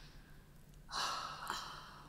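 A person's loud, breathy exhale about a second in, lasting about half a second, with a small click near its end.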